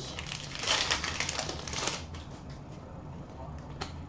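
Hockey cards and a card pack being handled by hand: a soft crinkling and shuffling with light clicks, busiest in the first two seconds, then quieter, with one sharp click near the end.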